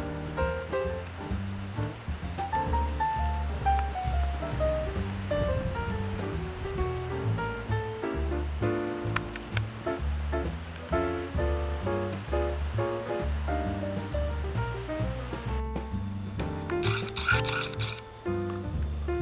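Background instrumental music: a melody of short stepped notes over a steady, repeating bass line.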